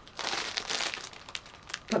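Clear plastic bag packed with balls of yarn crinkling and rustling as it is handled, a dense run of crackles starting about a quarter of a second in.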